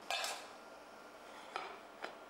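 Metal plate cover and china plate clinking against a stainless-steel counter as a plated dish is handled: a sharp clatter just after the start and a second, smaller one about a second and a half in.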